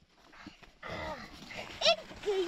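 A child's voice: a short breathy laugh about a second in, then a brief high-pitched squeal near the end.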